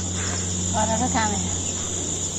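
Steady high-pitched drone of insects in the hillside scrub. A faint distant voice is heard briefly about a second in.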